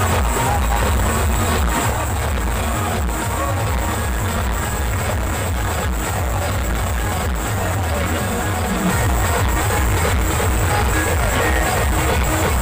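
Loud amplified band music with heavy, distorted bass and drums, played through a truck-mounted stack of horn loudspeakers; the music keeps going without a break.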